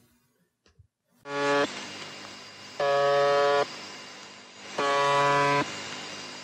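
Recording of UVB-76, 'the Buzzer', a Russian shortwave numbers station: after about a second of silence, a harsh buzz tone sounds three times, each buzz under a second long and about two seconds apart, with a hiss of radio static between them.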